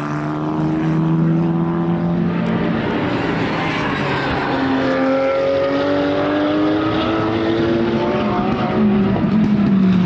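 Racing car engines at full throttle on track. The pitch climbs in two long rising runs as the revs build, and near the end a second car's engine note comes in, falling in pitch.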